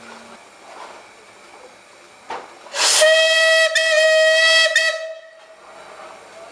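The steam whistle of SR Merchant Navy class locomotive 35028 Clan Line blown once, for about two and a half seconds: a rush of steam, then a single steady note that wavers slightly twice before it stops.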